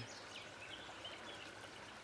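Faint outdoor ambience: a steady wash of running water, with a few faint bird calls in the first half.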